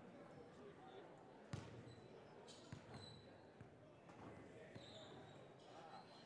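Basketball bouncing on a hardwood gym floor, with one sharp thump about a second and a half in and a few lighter ones after, over faint, indistinct crowd chatter in the gym.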